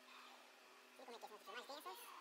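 Near silence for about a second, then faint voices talking.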